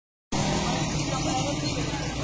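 Steady outdoor background noise with a low hum, as of traffic, and faint voices of people nearby, starting after a short silence at the very start.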